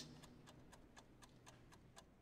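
Faint, rapid, even ticking of a mechanical chess clock, about five ticks a second.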